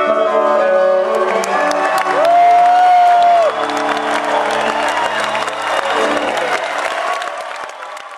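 A live country band ending a song, with a long held note in the middle, while the concert crowd claps and cheers over it; the sound fades out at the end.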